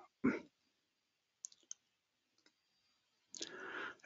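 A few faint, sharp clicks over a quiet call line, two of them close together about a second and a half in, followed by a soft breath just before speech resumes.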